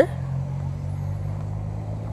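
Steady low hum of a vehicle engine running, with no change in pitch or level.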